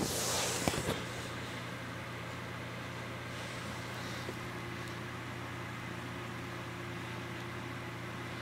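Small electric fan running with a steady motor hum, with a brief rustle and a couple of clicks in the first second.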